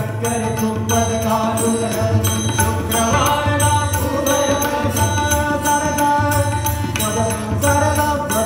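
Live Indian devotional (bhajan) music: a male voice sings a melodic line over harmonium, with a tabla rhythm and a tanpura drone beneath.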